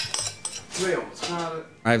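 Kitchen clatter: a glass mixing bowl and utensils clinking as ingredients are added to a batter, with a few sharp clinks at the start. A man's voice is briefly heard in the middle, and speech begins near the end.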